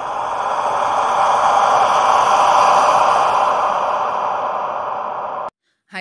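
Whoosh sound effect of an animated intro: a breathy rush of noise that swells over the first few seconds, eases a little, then cuts off suddenly about five and a half seconds in.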